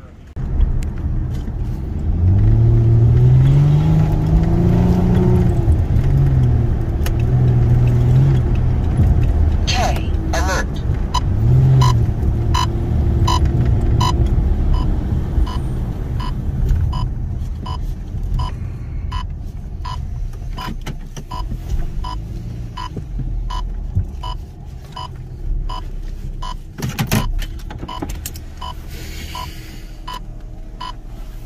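Car interior while driving, with a steady low engine and road rumble. From about a third of the way in, a turn-signal indicator clicks steadily, about three clicks every two seconds.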